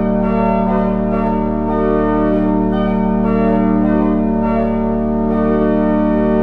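Church pipe organ playing full, sustained chords over a steady held low note, the upper notes changing every half-second or so.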